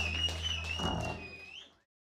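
A long wavering whistle, ending in a short upward slide, over a low steady stage hum that stops just under a second in. The sound fades out to silence near the end.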